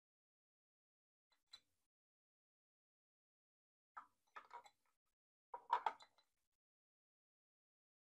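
Near silence broken by faint handling noises at a fly-tying vise: a single small click about 1.5 s in, then two short bursts of small clicks and rustles around four and six seconds in, the second the loudest, as fingers wrap fine wire ribbing forward on the fly.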